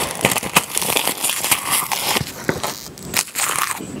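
Mouth chewing a bite of rice wrapped in crisp roasted seaweed (gim), close to the microphone: a dense run of sharp crackles and crunches.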